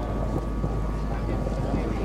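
Steady wind rumble on the microphone, with indistinct voices in the background.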